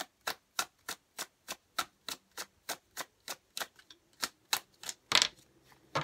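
A tarot deck being shuffled by hand, each packet of cards slapping down in a steady rhythm of about three clicks a second. A louder rustle of the cards comes near the end.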